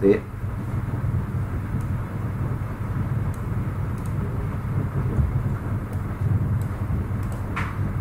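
A steady low rumble of background noise with a faint hum, and a few faint, sharp clicks scattered through it.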